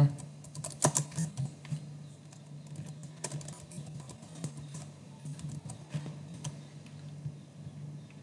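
Computer keyboard typing: scattered keystrokes, some in quick little runs, as a short phrase is typed. A low steady hum sits underneath.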